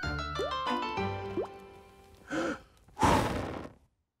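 Cartoon background music with comic sound effects, including two quick rising pitch slides. About three seconds in comes a loud breathy whoosh, and the sound then cuts to silence.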